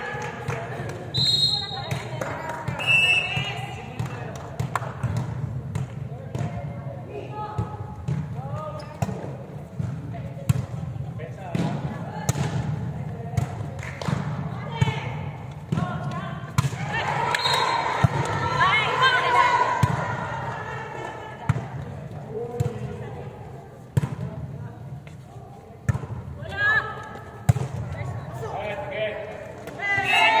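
A volleyball being struck and bouncing on an indoor court floor in a large gym hall, with repeated sharp hits. Players call and shout during the rally, loudest a little past the middle.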